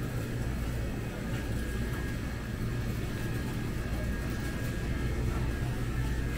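Steady supermarket ambience: a constant low hum with faint music playing in the background.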